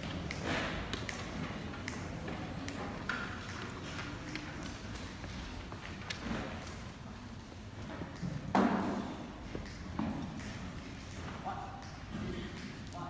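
Low murmur of voices in a large gymnasium, with scattered small clicks and knocks and one brief louder burst of noise about eight and a half seconds in.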